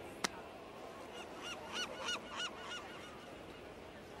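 A quick series of about six short, faint honking calls, each rising and falling in pitch, after a single sharp click near the start.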